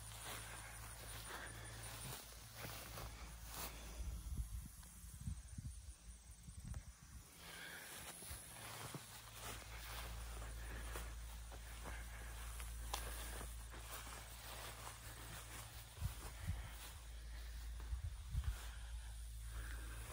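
Footsteps through grass, with a low steady rumble of wind on the microphone and scattered small clicks.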